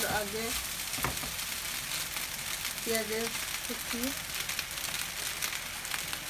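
Egg fried rice sizzling steadily in a hot oiled frying pan as a spatula stirs it, with a knock of the spatula against the pan about a second in.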